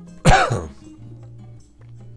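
A man's single loud cough about a quarter second in, over quiet background guitar music.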